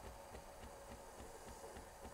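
Near silence: faint room tone with light, regular ticking.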